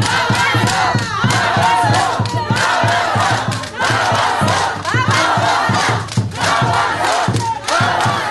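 A crowd of women chanting protest slogans in unison, in short shouted phrases about a second long with brief breaks between them.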